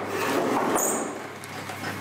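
A plastic-wrapped wooden ski press mould being slid onto a metal rack shelf, a scraping rub that is loudest in the first second and then tapers, with a brief rustle of the plastic film about halfway through.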